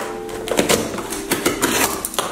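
Packing tape being peeled off a cardboard shipping box, a rapid run of crackling clicks that thickens about half a second in.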